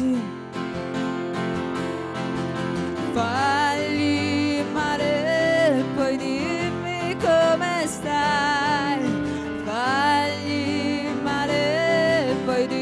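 Live band music: a singer's voice with vibrato, held notes over a strummed guitar, the voice coming in strongly about three seconds in.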